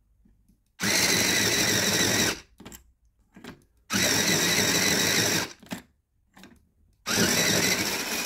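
Tenwin electric pencil sharpener's motor-driven cutter grinding a graphite pencil in three bursts of about a second and a half each, with short pauses between, sharpening toward its auto-stop.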